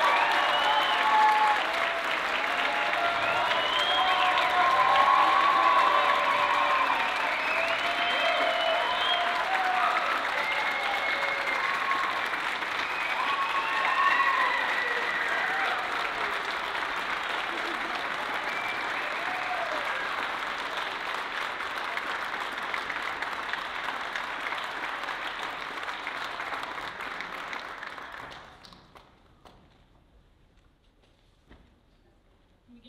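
Audience applauding, with cheers and whoops over the clapping in the first several seconds; the applause gradually thins and stops shortly before the end.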